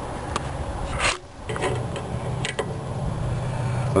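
Metal hand tools being handled: a few light clicks and one louder clatter about a second in, over a steady low hum.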